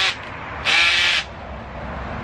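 A single harsh cry lasting about half a second, over a steady outdoor background hiss.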